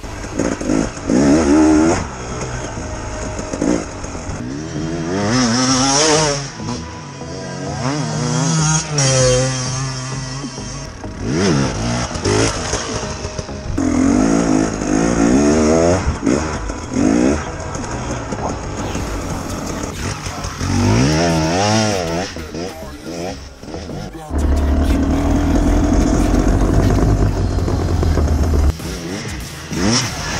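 KTM enduro motorcycle engine revving hard over and over in a series of rising sweeps, each dropping away as the throttle shuts or a gear changes, as the bike is ridden over bumpy dirt. Near the end it holds a steadier, lower note for a few seconds.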